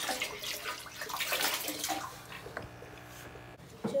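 Water poured from a clear plastic container into an aquarium, splashing into the tank for about two seconds and then dying away.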